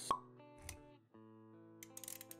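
Soft background music with sound effects: a sharp pop just after the start, then a low thump about two thirds of a second in.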